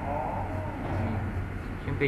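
Steady low hum over background noise, with a brief voice-like sound falling in pitch in the first second.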